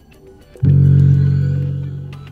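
Portable Bluetooth speaker's power-on tone: a single loud, low, plucked-bass-like note starting suddenly about half a second in and ringing on as it slowly fades.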